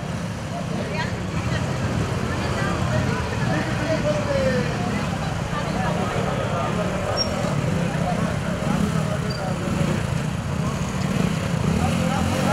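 People chatting over the steady, low running of several motorcycle engines, the bikes crawling forward at walking pace.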